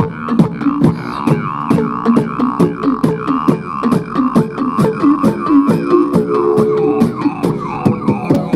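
Group beatbox through microphones: several beatboxers keep a steady beat of vocal kick and snare hits, about four a second, over a sustained hummed bass line, with short falling vocal sweeps repeated in time with the beat.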